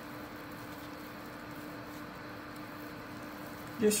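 Quiet room tone: a faint, even hiss with a steady low hum and no distinct handling sounds, then a word of speech right at the end.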